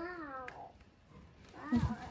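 Newborn calf bawling once, a short cry that rises and then falls in pitch.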